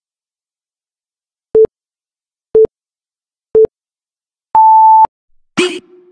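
Electronic countdown beeps: three short low beeps a second apart, then one longer, higher beep of about half a second, marking the end of the count. Near the end, loud bursts of music cut in.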